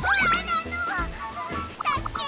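A high-pitched cartoon character's voice crying out, with a sharp rising squeal at the start and shorter wavering cries later, over light background music.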